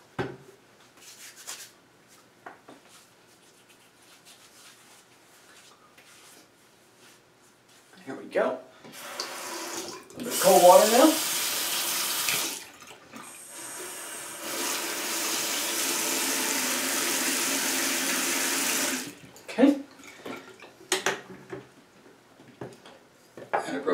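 Bathroom sink faucet running into the basin for about ten seconds, louder and splashier at first, then a steady stream until it is shut off abruptly. A short vocal sound comes during the first part.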